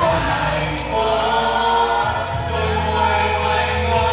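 A group of amateur voices singing a Vietnamese pop song together into microphones, over a music backing track with a steady bass line.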